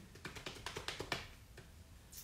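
A fast run of about a dozen light, sharp clicks or taps, around ten a second, lasting about a second and ending on the loudest one.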